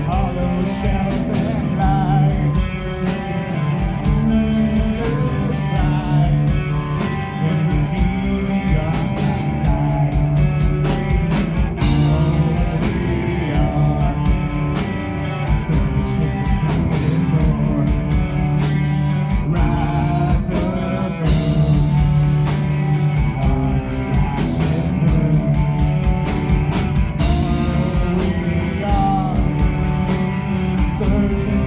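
Live rock band playing: distorted electric guitar, bass guitar and a drum kit, with a male lead vocal over them.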